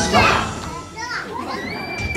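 Recorded music breaks off at the start, and young children's voices call out and chatter. Near the end one child holds a long high note.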